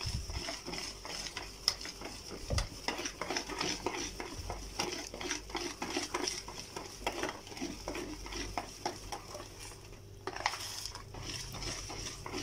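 Wire whisk beating a semolina batter for basbousa in a plastic bowl: quick, continuous strokes with light ticks of the whisk wires against the bowl, easing briefly about ten seconds in.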